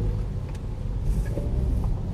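Low, steady rumble of a car's engine and tyres heard from inside the cabin as it drives along.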